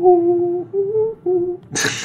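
A man humming a short three-note tune in held notes, the middle note a little higher than the other two. Speech starts in near the end.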